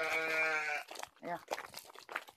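A sheep bleats once, a single call of about a second held at a steady pitch with a slight quaver.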